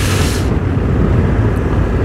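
A motorcycle engine runs at low road speed, heard as a steady low rumble mixed with wind noise on the rider's camera microphone. There is a brief hiss right at the start.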